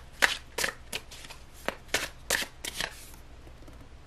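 A deck of tarot cards being shuffled by hand: a run of about eight quick, sharp card slaps that stops about three seconds in.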